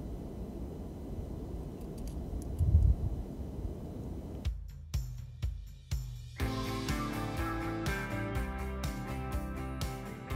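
Wind buffeting the microphone, a low gusty rumble with one louder gust about three seconds in. About four and a half seconds in it gives way to background music: a few single hits, then from about six and a half seconds a full band with a steady beat.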